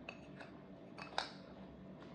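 Metal spoon clinking and scraping against a bowl while scooping ice cream cake: a few light clinks, the sharpest a little over a second in.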